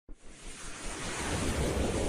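Whoosh sound effect of a logo intro animation: a swell of rushing noise that builds steadily in loudness.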